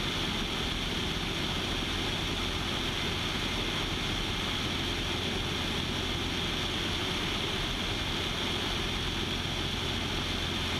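Steady drone of a Citabria's engine and propeller mixed with wind rush over a camera mounted outside on the wing, unchanging in level cruise with the aircraft trimmed hands-off.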